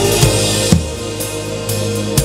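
Live gospel band music: drum kit strikes about a quarter and three quarters of a second in, with a cymbal wash in the first second, over held keyboard and bass notes.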